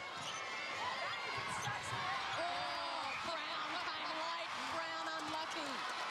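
Arena crowd during a netball match, a steady din with individual voices shouting above it, and thuds of the ball and players' feet on the court.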